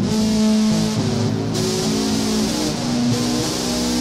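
LP-style electric guitar played through a Behringer UM300 Ultra Metal distortion pedal: held, heavily distorted notes that change pitch every half second or so.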